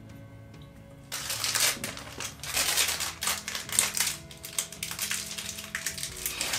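Crackling, crinkling and tearing of a toy blind pack's packaging being opened by hand, with many small clicks, starting about a second in, over faint background music.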